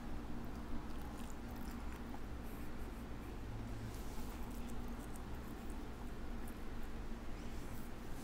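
A person chewing a mouthful of cooked baby octopus: faint mouth sounds and small scattered clicks over a steady low hum.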